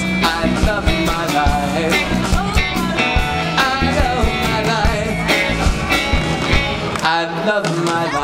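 Live rock band playing: electric guitar, bass and drums. The bass and kick drum drop out briefly about seven seconds in, then come back.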